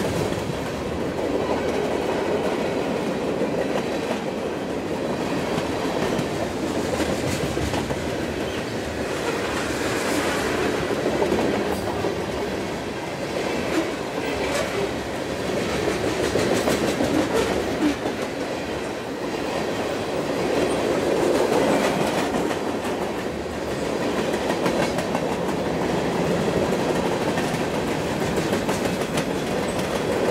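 Railroad cars rolling past with wheels clattering over the rail joints: a steady, unbroken rumble with scattered clicks and no horn.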